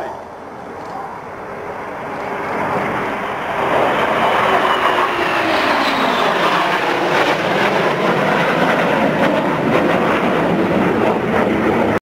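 Jet engine noise of a BAE Hawk Mk120 and two Saab Gripen fighters flying past in formation. It builds over the first four seconds to a loud, steady roar, with a faint whine falling in pitch midway through.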